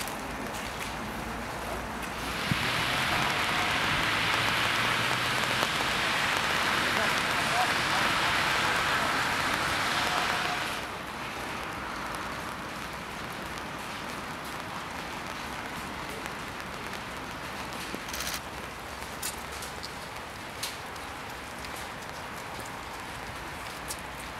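Steady patter of rain on wet pavement and debris, louder for about eight seconds and then dropping to a quieter background with a few faint clicks.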